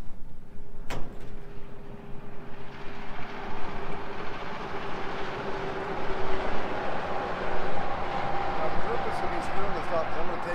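Power drill driving a screw through the overlapping ribs of two metal roofing panels to hold them together, its motor running steadily for several seconds after a sharp click about a second in.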